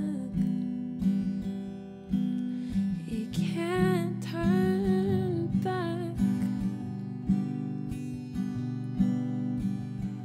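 Acoustic guitar strummed steadily in a slow song accompaniment. A singing voice carries a melody over it for a few seconds in the middle, and the guitar continues alone after that.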